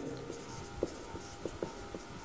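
Marker writing on a whiteboard: faint scratching strokes with a few light ticks as the tip taps the board.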